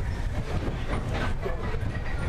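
Big Thunder Mountain Railroad mine-train roller coaster rolling along its track, heard from a seat on board as a steady low rumble.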